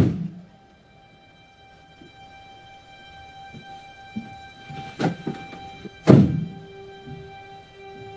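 Film score of sustained, held tones, with a sharp thunk at the very start and a heavy thud about six seconds in, followed by a new low held note.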